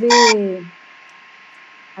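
Speech only: a woman draws out one word, falling in pitch. Then comes a pause of over a second with only faint steady background hiss and a thin steady tone.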